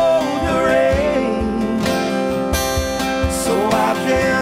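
Live acoustic music: acoustic guitars strumming chords under a sung lead vocal melody.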